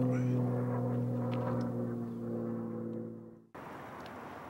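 A held low musical drone with steady overtones, fading away and cutting off suddenly about three and a half seconds in; a steady, quieter background hiss follows.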